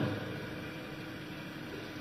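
A pause in amplified speech: the last word fades out with a little hall echo, then only a faint steady hum and hiss of the room and its PA system remain.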